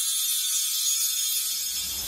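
Animated logo-intro sound effect: a high, shimmering sparkle of many fine ticks, with a low rumble swelling in during the second half.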